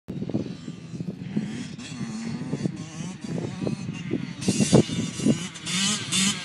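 Yamaha YZ85's single-cylinder two-stroke engine revving up and down as the dirt bike approaches, growing louder and brighter from about four and a half seconds in.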